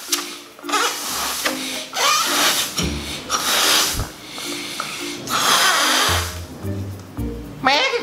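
A rubber balloon being blown up by mouth: four long breaths of air rushing into it, each about a second long, with short pauses between, over background music.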